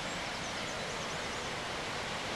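Steady rushing of a mountain stream flowing through a rocky gorge.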